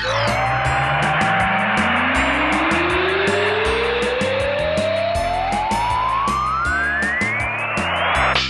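Children's song backing music with a cartoon sound effect on top: a hissing whistle that climbs steadily in pitch, low to high, over about eight seconds.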